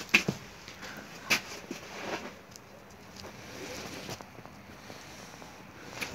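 Quiet outdoor background with a few soft knocks and rustles near the start, from footsteps and a hand-held phone being moved while walking.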